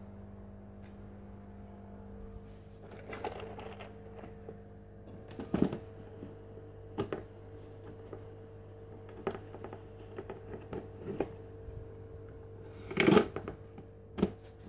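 Scattered light clicks and knocks of plastic containers and a jar being handled, with a louder clatter near the end as a plastic tub's lid is handled, over a steady low hum.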